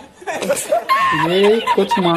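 A man laughing in chuckles and snickers: the 'El Risitas' laughing-man meme, dropped in as a sound effect.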